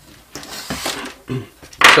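Light handling sounds of an 18650 lithium cell being set down on a wooden desktop, a soft clatter of a small metal-ended cylinder on wood.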